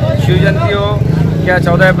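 A man speaking in Hindi over a steady low rumble of road traffic.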